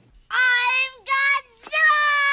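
A young girl screaming in a high, shrill voice: two short screams, then a long held scream that begins near the end.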